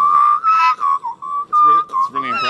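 A man's whistled imitation of an Australian magpie's call: a string of short warbling whistled notes at about one pitch, wavering and breaking every fraction of a second.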